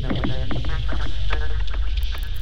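Electronic music played live from a laptop and grid pad controller: a heavy bass line under sharp clicking percussion and synth tones that slide in pitch.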